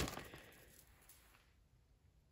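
Clear plastic bag crinkling briefly as hands pull an ornament out of it, fading away within about half a second, then near silence.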